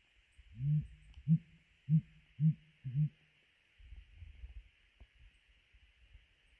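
Male blue grouse hooting in display: a series of five deep, soft hoots about half a second apart, given with the neck sacs inflated.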